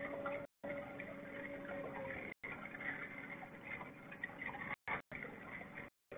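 Light ticking and lapping water around a small fishing boat, over a faint steady hum that fades out about two seconds in. The sound cuts out completely for brief moments several times.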